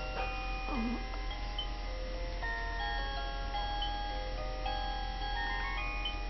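A simple electronic lullaby tune from a baby bouncer's music unit, played as a string of clean, held chime-like notes stepping up and down in pitch.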